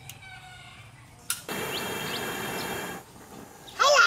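Portable gas stove being lit: a click, then a steady rush of burning gas for about a second and a half that stops abruptly. A few bird chirps sound over it.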